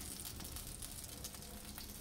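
Faint, steady sizzling with light crackles from a beef rump cap roasting on a parrilla grill over charcoal.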